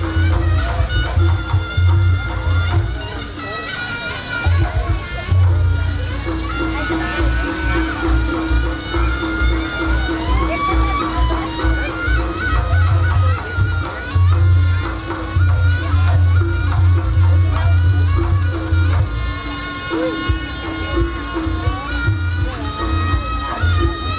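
Reog Ponorogo gamelan accompaniment: a slompret shawm playing a wavering melody over beating drums and steady ringing gong-chime tones.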